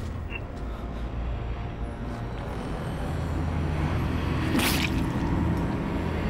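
A low, steady rumbling drone, the ambient score of a dramatic scene, slowly growing louder, with one short sharp rush of noise about three-quarters of the way through.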